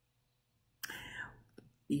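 A short breathy, whisper-like sound from a man's voice about a second in, followed by a small mouth click just before he starts speaking again.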